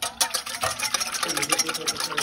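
A wire whisk beating a vinaigrette in a stainless steel bowl: quick, continuous scraping and clicking of the wires against the metal.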